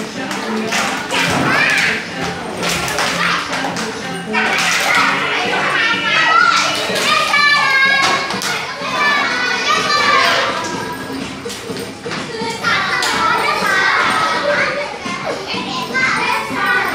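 A class of young children shouting and singing along over a children's dance song, with scattered thumps from their moving about.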